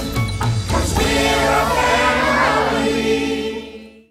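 Closing song sung by a mixed choir of adults and children over instrumental backing, fading out near the end.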